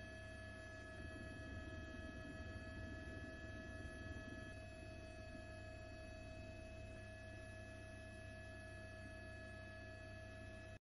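Faint steady hum and whine: several unchanging high tones over a low rumble, swelling slightly a second or so in.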